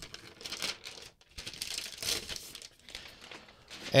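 Paper protective wrap being peeled and pulled off a laptop: rustling and crinkling, with a short pause about a second in and fainter rustles near the end.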